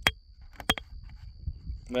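Steel rock hammer striking a stone concretion to crack it open: two sharp clinks, one right at the start and a doubled one about two-thirds of a second later.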